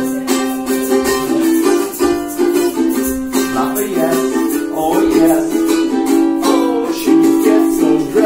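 Ukulele strummed in a steady rhythm of chords.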